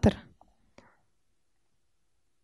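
The tail of a woman's spoken sentence at the very start, then near silence: a pause in the talk with only a faint click or two.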